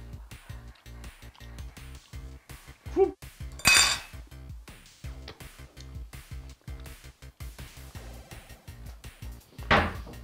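Metal fork clinking and scraping on a ceramic plate while a person eats, over background music, with a louder short noisy sound about four seconds in and another near the end.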